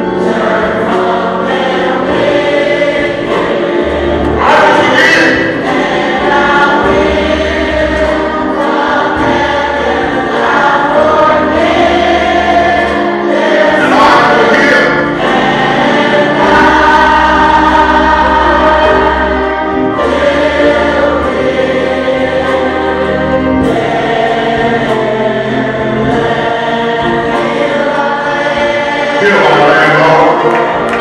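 Gospel choir singing with instrumental accompaniment, over low bass notes held for a few seconds at a time.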